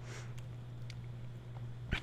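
Steady low electrical hum under faint room noise, with a few soft clicks of a stylus on a drawing tablet.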